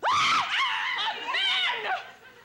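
A woman shrieking: a sudden loud cry, then more high cries that rise and fall in pitch, dying away just before the end.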